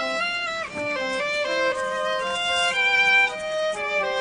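Background music: a melody on violin moving in short stepping notes.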